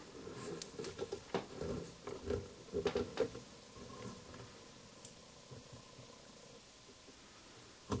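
Faint clicks and rubbing of plastic parts as the top of a sewing and embroidery machine is handled, a part on it being raised, over the first half or so; then only a quiet room hush.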